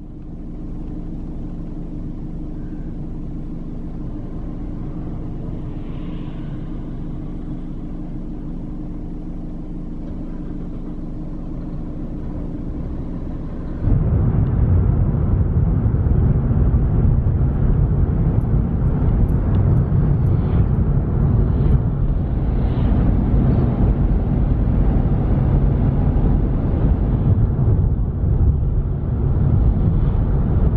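Car interior sound while driving: a steady engine hum with a few held low tones, then, after an abrupt cut about halfway, a louder, even rumble of engine and tyre noise at road speed.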